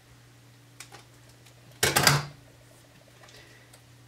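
Scissors cutting a clear plastic photo pocket: faint blade clicks about a second in, then one loud, short crunch about two seconds in.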